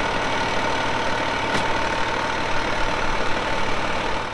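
Fire engine's engine running steadily at the pump panel, with a steady hum over it and a single short click about one and a half seconds in.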